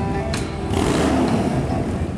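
A live rock band plays, and about halfway through a motorcycle engine revs over the music in a noisy swell.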